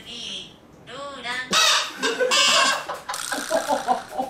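Super mouth horns, party horns strapped across the mouth, honking in several pitches as the wearers laugh through them; the horns get loud from about a second and a half in and go on in uneven bursts.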